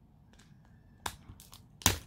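A cracked glass smartphone being handled and turned over: a few light clicks and taps, one about a second in and the sharpest near the end.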